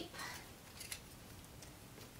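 Faint handling of a handheld tape dispenser against a cardboard box: soft rustling with a few light clicks, as tape is readied to seal the box.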